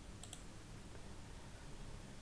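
Two faint computer-mouse clicks in quick succession a quarter of a second in, over low background hiss.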